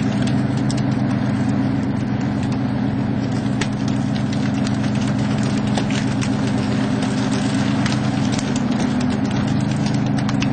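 The trawler's engine running as a steady low drone, with scattered sharp knocks and slaps as fish from the emptied net bag land and flop on the deck.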